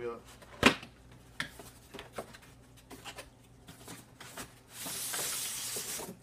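Cardboard product box being opened: a sharp knock about half a second in and a few lighter taps, then about a second of scraping near the end as the white inner box slides out of its cardboard sleeve.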